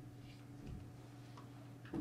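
Quiet room tone: a steady low hum with a few faint ticks, and a short soft sound near the end.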